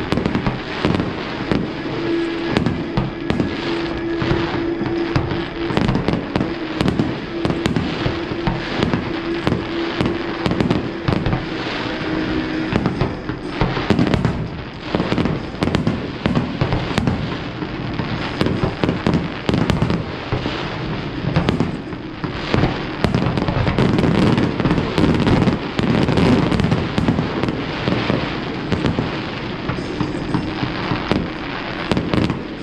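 Aerial fireworks display: a dense, continuous run of shell bursts, bangs and crackling, with no pause. A steady low tone is held underneath for about ten seconds in the first half.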